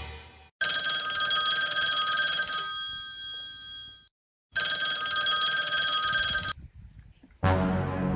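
Mobile phone ringtone ringing in two bursts, the first about three and a half seconds long and the second about two seconds long, with a short silence between them.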